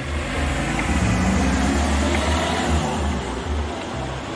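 A road vehicle passing: a steady low rumble with a broader hiss of tyres and engine that swells in the middle and eases off near the end.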